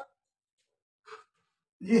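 A pause in a man's speech: near silence, broken about a second in by one brief, faint sigh-like breath.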